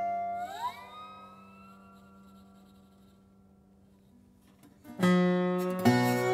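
Acoustic Weissenborn lap steel guitar played with a steel slide bar: a ringing chord glides upward in pitch, sustains and fades almost away, then a new chord is plucked about five seconds in.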